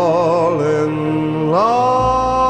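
Slow orchestral ballad music: long held notes with vibrato, gliding up into a new held note about one and a half seconds in.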